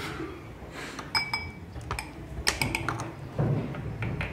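Metal spoons clinking and scraping against small glass tumblers while honey is spooned in: several short ringing clinks, a pair about a second in and another pair about two and a half seconds in.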